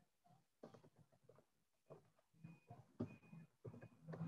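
Near silence: quiet room tone with faint, scattered small noises.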